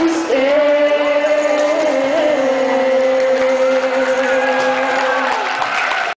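A girl's and a boy's voice hold one long final note together, an octave apart, over acoustic guitar accompaniment. The note wavers briefly about two seconds in, then holds steady.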